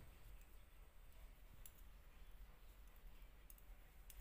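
A few faint clicks of knitting needles as stitches are worked, over a low steady hum; otherwise near silence.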